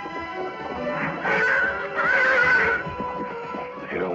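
A wild horse whinnying twice, about one and two seconds in, over film score music with sustained notes.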